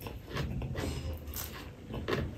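Close-miked chewing of a handful of rice eaten by hand: a run of irregular smacks and mouth clicks.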